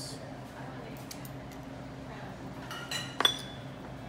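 Small glass items clinking together, most likely the glass dropper knocking against its little glass bottle of orange blossom water as it is put away. There are two quick clinks about three seconds in, the second sharp and briefly ringing.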